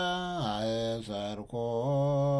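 A man chanting solo and unaccompanied in Ethiopian Orthodox liturgical style: a mesbak, the psalm verse sung before the Gospel. He holds long, sustained notes, stepping down in pitch about half a second in. There is a brief pause about halfway through.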